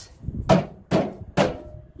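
Three sharp knocks about half a second apart, the first the loudest, as a meter box door is worked off its hinges.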